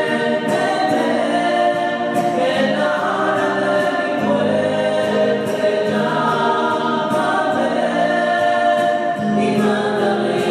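Small mixed choir of women's and men's voices singing in harmony, holding long notes that change every second or so.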